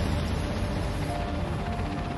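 Steady low drone of a fleet of airships' engines, mixed with background music.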